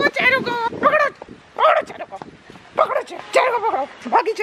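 A small white dog barking and yipping in about six short, high calls with gaps between them, excited during play.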